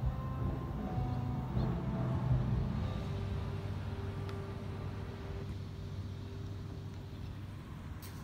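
A car engine idling steadily, a low hum that slowly fades.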